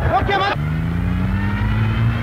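Brief shouting voices, then from about half a second in a vehicle engine accelerating, its note rising steadily.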